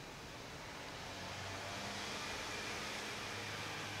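Faint, steady room tone: an even hiss with a low hum underneath.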